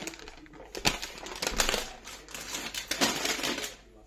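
Paper-wrapped gift packages being handled and set down, their wrapping paper rustling and crinkling in quick irregular bursts. The crinkling comes in two spells and dies away near the end.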